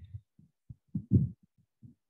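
A series of soft, low thumps at irregular intervals, the loudest about a second in.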